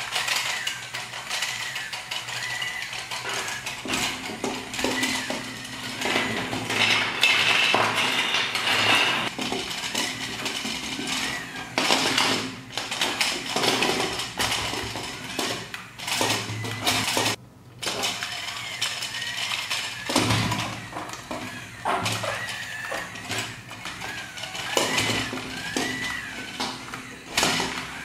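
Small battery-powered electric motor in a building-block toy harvester whining through its rubber drive belt, while the plastic tracks, gears and wheels clatter and rattle as the vehicle runs. The whine wavers in pitch with the load, and the sound drops out briefly about seventeen seconds in.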